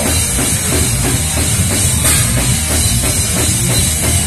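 Live metal band playing loud, with the drum kit driving a fast, steady beat of about four strokes a second under electric guitar.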